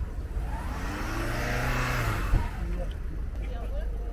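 A car driving past close by, its engine note rising and then falling as it passes, over a steady low rumble, with a short knock about two seconds in.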